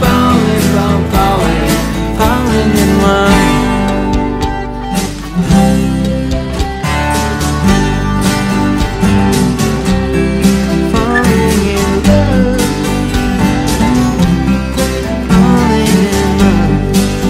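Music: a twelve-string acoustic guitar strummed and picked over a backing track with bass, in a passage with no singing. A higher lead melody line bends in pitch above the chords.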